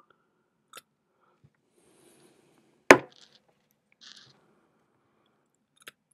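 Small hand tools being handled during microsoldering work: a few faint clicks and taps, with one sharp click about three seconds in.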